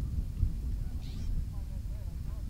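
Faint, distant voices of people talking outdoors over a steady low rumble, with a brief high wavering call about a second in.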